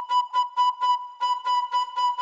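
Synthesized flute-like lead from a Serum patch, distorted and filtered, holding one high note that pulses evenly about five times a second, played through a short room reverb.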